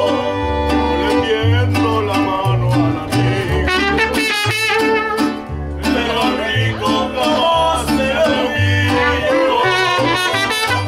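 Mariachi band playing live: violin and trumpet over strummed vihuela and deep guitarrón bass notes, with a man singing.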